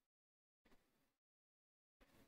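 Near silence, with one faint, brief noise a little over half a second in.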